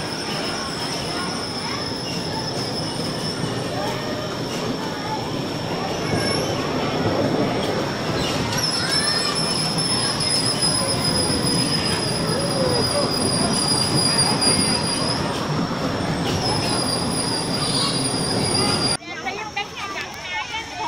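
Electric bumper cars running on the ride's metal floor: a steady rolling rumble with a high whine, louder from about six seconds in. Near the end it cuts off abruptly to quieter outdoor sound.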